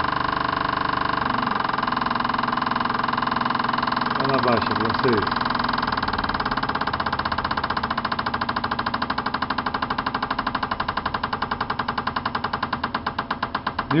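High-flow fuel injectors (500 lb/hr) pulsing on an injector test bench, spraying into the burettes: a rapid, even clicking over a steady hum, the clicks slowing and growing more distinct as the bench's simulated engine speed is brought down toward 1,000 rpm.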